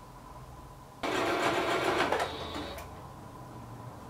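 Electric Singer sewing machine stitching a skirt hem: it starts abruptly about a second in, runs fast for about a second, then eases and stops just under three seconds in.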